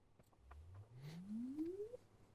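Impedance tube's source loudspeaker playing a logarithmic swept sine: one faint pure tone gliding steadily upward from a low hum to a mid pitch, starting about a third of a second in and stopping near the end. It is the test signal for measuring the absorption coefficient of the loudspeaker absorber in open circuit.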